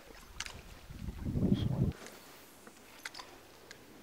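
A dull low rumble lasting about a second near the middle, handling noise on the camera microphone as it is swung round during a cast with a spinning rod, with a few faint sharp clicks before and after.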